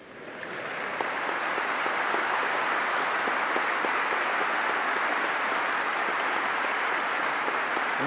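A large audience applauding in a big, echoing hall: the clapping swells up over the first second and then holds steady. It follows a line of a speech.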